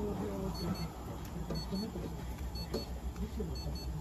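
An electronic device beeping: two short high beeps in quick succession, repeating about once a second, over low voices talking in the background and a steady low hum.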